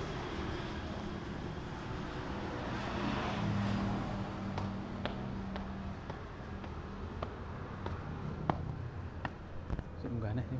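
Steady low hum of a motor vehicle engine, loudest a few seconds in. In the second half come several sharp irregular clicks of footsteps on concrete stairs.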